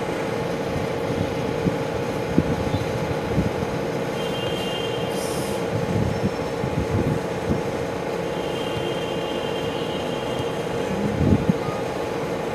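Steady background hum with an even rushing noise, a couple of faint brief high tones, a short hiss about five seconds in, and a soft knock near the end.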